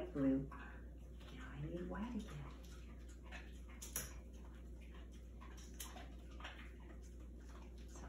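Quiet handling of tape and ribbon strips on a plastic cup, with a few sharp clicks around the middle. A brief low vocal sound, rising and falling in pitch, comes about two seconds in.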